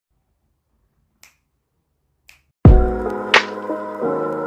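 Two faint finger snaps about a second apart, then a music track starts abruptly about two and a half seconds in with a deep bass hit, sustained chords and a sharp snap on the beat.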